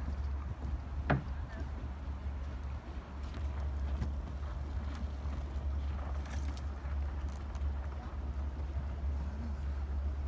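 A steady low rumble throughout, with a single sharp click of a DSLR camera shutter about a second in, and a few faint knocks later on.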